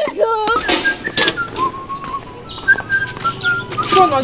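Whistling: a slow tune of a few held notes that step up and down, following a short cry at the start.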